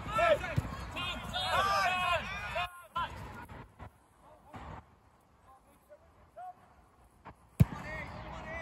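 Voices shouting across a football pitch, then a quieter spell, and near the end a single sharp thud as the goalkeeper kicks the football upfield.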